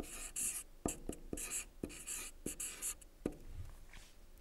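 Marker pen writing on a white board: short scratchy strokes, with a sharp tap each time the tip touches down, about half a dozen times.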